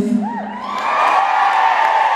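The band's last held note stops, a single whoop rises and falls, and then the audience breaks into loud cheering and screaming that builds about a second in and holds.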